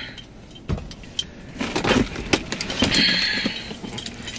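Belongings being handled in a car cabin: a few sharp clicks and clinks, then rustling as a face mask is picked up.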